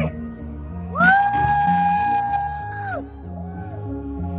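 Synth-pop band playing live through a club PA, steady electronic bass and chords, recorded on a phone. About a second in, a long high 'woo' from the crowd rises, holds for about two seconds and falls away, with a shorter one after it.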